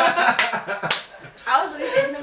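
Two sharp hand smacks about half a second apart, amid laughter and talk.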